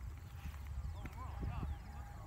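People's voices, distant and without clear words, over a steady low rumble, with crickets faintly chirping in a quick, evenly repeated high pulse.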